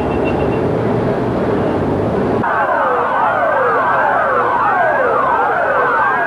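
A steady rush of noise, then, about two seconds in, several police car sirens start up together. They wail over one another, their pitch sweeping up and down over and over.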